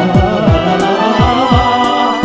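Background music with a steady beat of deep drum hits, about three a second, under a held melody.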